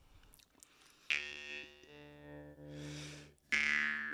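Metal jaw harp plucked about a second in, its low drone ringing with a bright twangy overtone for about two seconds. A louder run of plucks starts shortly before the end.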